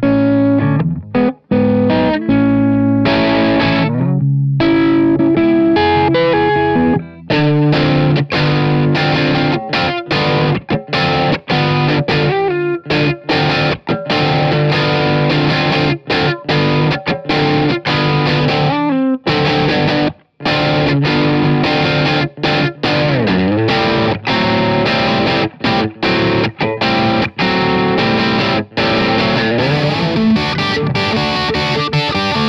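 Electric guitar played with distorted, high-gain tone through an EVH 5150 III 15-watt EL84 tube amp head, in riffs with a few brief breaks. There is a string bend a little past two-thirds of the way through.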